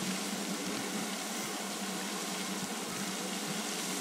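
Steady, even hiss of outdoor background noise with a faint low hum underneath, no voices.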